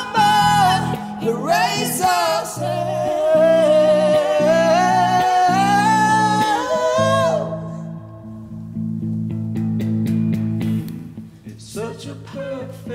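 A female singer holds one long note with vibrato over strummed electric guitar chords. About seven seconds in the voice stops and the guitar chords carry on alone, and a voice comes back in near the end.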